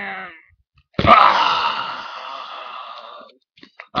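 A sharp knock about a second in, then a loud, breathy mouth-made 'haaah' that fades away over about two seconds: a vocal sound effect over toy action figures being fought on a homemade wrestling ring. Just before it, a drawn-out voiced 'yeah' trails off.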